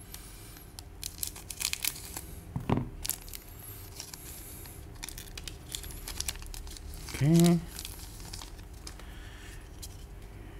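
Scissors snipping through a foil trading-card booster pack, then the foil wrapper crinkling and tearing as it is pulled open and the cards slid out. A short vocal sound from the man comes about seven seconds in.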